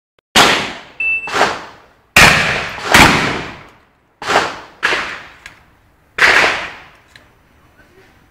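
Semi-automatic competition shotgun (an Akkar) firing a fast string of about eight loud shots, in quick pairs and singles, each with a short echoing tail.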